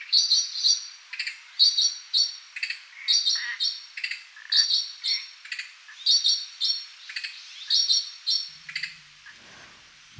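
A bird calling over and over, a short high chirp phrase repeated about once a second, with lower notes in between. It stops shortly before the end.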